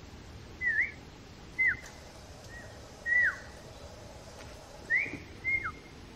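A bird giving short whistled calls, about six in all, most of them a brief note that swoops sharply downward and a couple that rise; the loudest comes about three seconds in.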